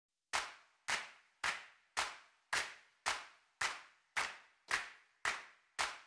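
A steady percussive click, about two a second and eleven in all, each sharp with a short fade: a tempo count-in leading into the song.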